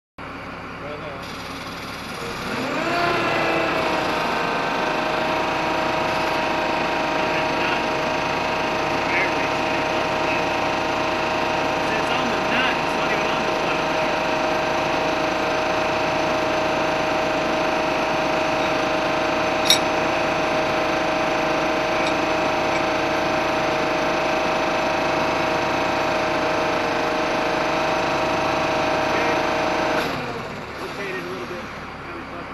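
An engine speeds up over about two seconds, then runs at a steady higher speed with a steady whine. A single sharp click comes about two-thirds of the way through.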